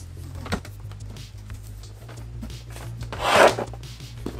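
Plastic handling sounds from a robot vacuum's self-emptying dock as its lid is worked and pressed shut: a light click about half a second in, then a short rustling scrape near the end, the loudest sound, over soft background music.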